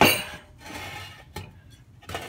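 A stick of butter sizzling as it is pushed around the bottom of a hot cast iron Dutch oven with a wooden spoon. There is a sharp clatter against the pot at the start and a single click a little past halfway.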